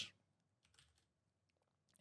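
A few faint computer keyboard keystrokes against near silence.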